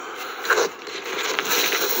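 Scraping and rustling of hands working around the plastic fuse box under the dashboard, over a steady background noise, with one light click about one and a half seconds in.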